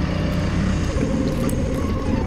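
Doosan 4.5-ton forklift's engine running steadily as the forklift drives, heard from the driver's cab.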